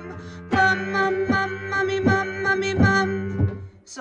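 Piano accompaniment for a vocal warm-up: a quick run of repeated notes in the low register set for the men's voices. It starts about half a second in and stops just before the end.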